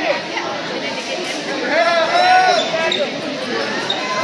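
Shouting voices and crowd babble echoing in a large gymnasium, with one loud shout about halfway through.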